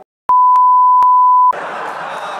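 A steady, loud one-tone censor bleep lasting about a second, covering a profanity, with small clicks where it is cut in and out. Audience applause breaks out as it ends.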